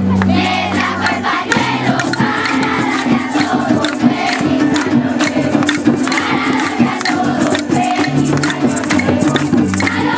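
A large group of children singing a festive song together, over an accompaniment with steady bass notes and a quick percussive beat.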